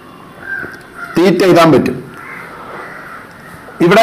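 Crows cawing in the background, faint and intermittent, with one louder call or short spoken sound about a second in.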